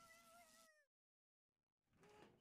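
A cartoon character's faint, drawn-out high wail that wavers and slides down in pitch, then cuts off suddenly under a second in.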